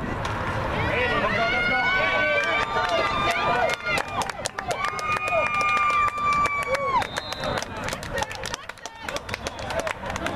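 Sideline spectators screaming and cheering, with two long, high-pitched held yells of a few seconds each and sharp claps scattered through the second half.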